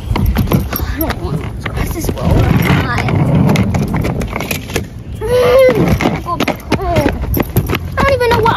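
Wheels of a rolling suitcase rattling over rough asphalt as it is pulled along, a continuous stream of small clicks and rumble. A child's voice sounds briefly about five seconds in.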